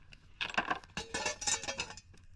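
Stones being handled, clinking and clattering together in a quick, dense run of sharp knocks that starts about half a second in.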